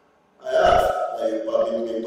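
A man's voice making a drawn-out vocal sound, starting about half a second in.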